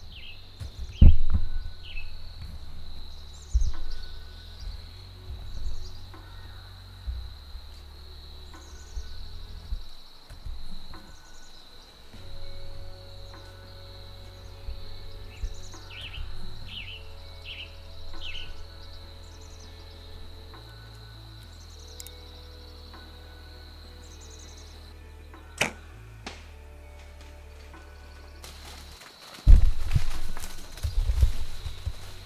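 A bow shot in the woods: one sharp snap of the string release about 26 seconds in, then the struck buck crashing off through the leaves near the end. Before the shot there is a steady high insect drone, repeated bird chirps and a few low bumps.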